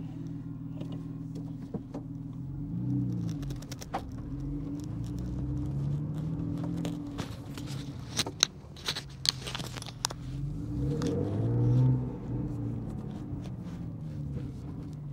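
Porsche 911 Carrera T's twin-turbo flat-six heard from inside the cabin while driving off, revving up three times through the gears and dropping back between shifts. Scattered clicks and knocks sound over it.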